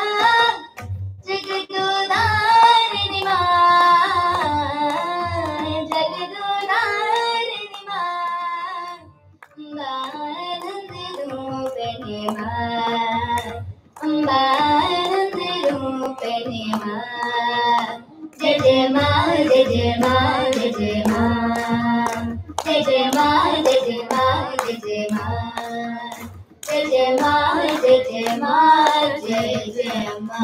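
Two girls singing in Indian style, accompanied by a harmonium's steady held notes and tabla strokes. The song comes in phrases with short breaks between them.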